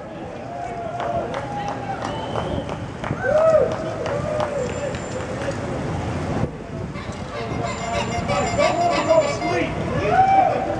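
Passing cyclists whooping and calling out over steady street noise, with short rising-and-falling shouts about three and a half seconds in and again near the end.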